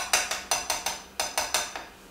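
Wire whisk clinking against a glass mixing bowl while beating a thick rice-flour batter: quick, even strokes about six a second, with a short break about a second in.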